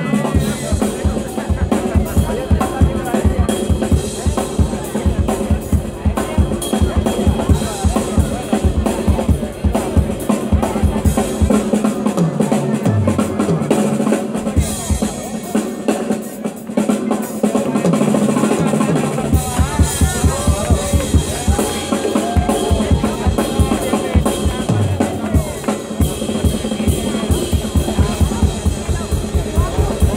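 Live drum-kit solo: dense strokes on bass drum, snare and rims, with the bass drum dropping out for several seconds about halfway through before it returns.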